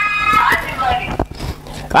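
A man's high-pitched, squeaky vocal sound lasting about half a second, followed by quieter talk.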